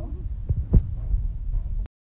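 Low rumble with a couple of dull thumps, a trace of voices at the very start, cutting off abruptly just before the end.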